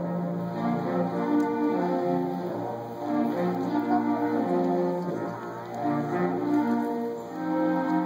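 A school concert band of brass and woodwinds playing slow, held chords that change every second or so.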